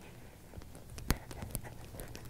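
Faint hoofbeats and tack sounds of a Friesian horse moving on a sand arena: a low rumble with a few scattered sharp clicks, the loudest about a second in.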